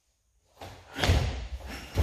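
Sharp snaps and thuds of a karate gi and bare feet on a mat as a kata technique is thrown, starting about half a second in and loudest about a second in, with a second burst near the end.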